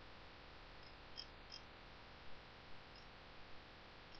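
Near silence: faint steady hiss of room tone with a few soft computer mouse clicks, two close together about a second in and a few more later.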